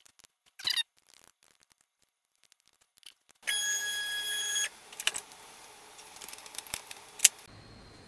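A steady high-pitched beep lasting just over a second, preceded by a brief sharp noise and followed by a few light clicks and knocks.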